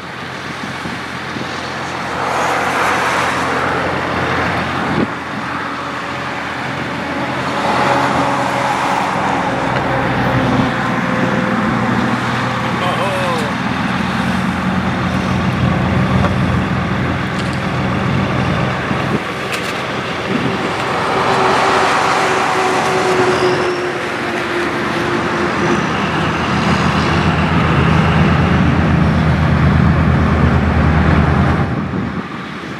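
A road vehicle's engine runs steadily under traffic noise that swells and fades several times, with a couple of sharp knocks.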